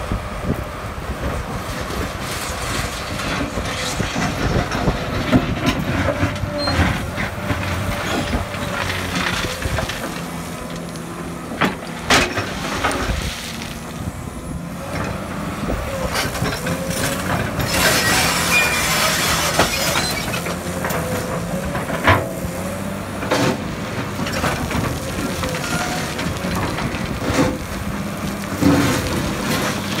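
Komatsu crawler excavator at work: its diesel engine runs steadily under load while the bucket scrapes through gravel, with stones clattering and several sharp knocks.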